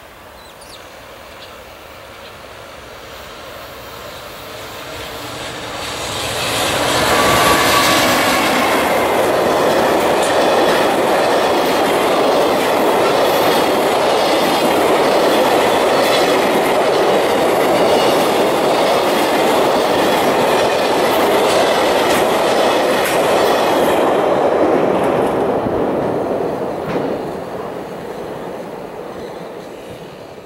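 A long JR Freight container train hauled by an EF210 electric locomotive passing at speed. The sound builds as the locomotive comes up and passes about seven seconds in. The container wagons' wheels then clatter steadily over the rail for some fifteen seconds, and the sound fades away as the tail of the train recedes.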